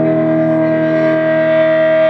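Electric guitar held through an amplifier as a steady, unchanging drone of several pitches at once, one tone standing out above the rest.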